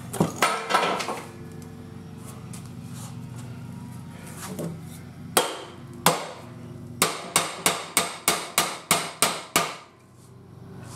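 Ball-peen hammer blows on the rust-seized roller of an old Ajax floor jack, struck to free it. There are two single sharp metal strikes, then a quick run of about ten blows at roughly three to four a second near the end.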